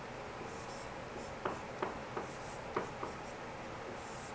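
Marker writing on a whiteboard: faint rubbing strokes with several short, light taps as the letters are formed, mostly between one and three seconds in.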